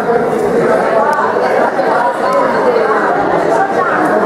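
Crowd chatter: many people talking at once in a large room, with no single voice standing out.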